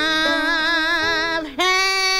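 A woman singing blues, holding a long note with a wide vibrato. It breaks off briefly about one and a half seconds in, then she takes up another held note.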